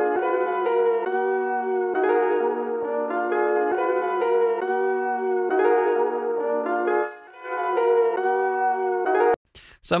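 A brassy melody of held chords played back from a beat, the chords changing about every two seconds, while a low cut is set on it in an equalizer. It drops out briefly just after seven seconds and stops about half a second before the end.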